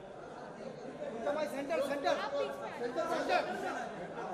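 Chatter of several people talking over one another, with no one voice clearly on top. It grows louder about a second in.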